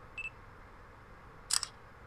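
Smartphone camera taking a photo with its shutter sound turned on: a short high beep, then about a second later a sharp double shutter click, really loud.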